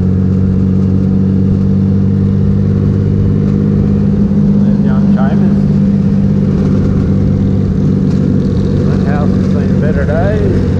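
Triumph Rocket III's 2.3-litre three-cylinder engine running steadily at cruising speed, heard from the rider's seat of the sidecar outfit.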